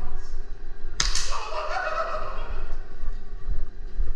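A sharp crack of airsoft gunfire about a second in, with a second one right behind it, followed by a short shout lasting about a second, over the low rumble of a player moving.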